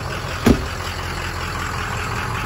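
2004 Ford Excursion's 6.0 L Power Stroke diesel V8 idling steadily, with a single door shutting hard about half a second in.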